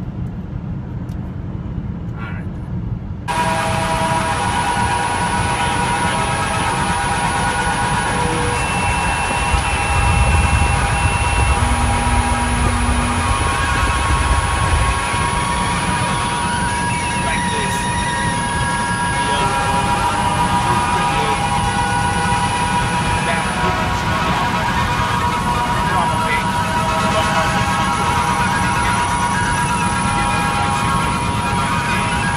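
Road and wind noise inside a car at highway speed: a steady rush that turns suddenly louder and hissier about three seconds in, with a heavier low rumble for a few seconds in the middle.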